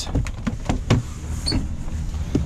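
GMC Savana van door opened from the inside handle: a quick run of latch clicks in the first second as it unlatches and swings open, while the power running board's motor starts to deploy the step.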